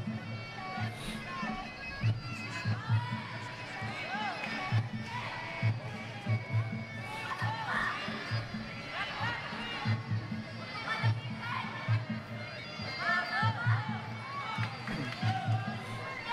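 Traditional Muay Thai sarama fight music: a shrill, reedy Thai oboe (pi) melody with swooping, bending notes over a steady drum beat, with crowd voices underneath.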